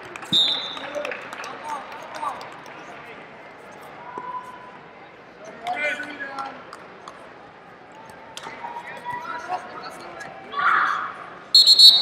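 Wrestling bout in a large hall: short scuffs and thuds of the wrestlers on the mat, with shouting voices from around the mat, then a loud, high referee's whistle near the end.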